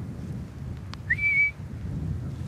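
A man's short whistle to call his dogs: a single note that rises and then holds for about half a second, a little past halfway through, over a low steady rumble of wind on the microphone.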